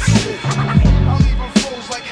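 Mid-1990s hip hop beat: a drum loop with hard kick and snare hits over a deep bass line and a sampled melody.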